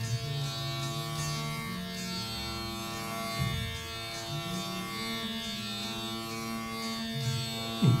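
Rudra veena playing slow, sustained low notes in Raga Malkauns, the notes bending in pitch (meend), with a quick deep swoop down and back up near the end.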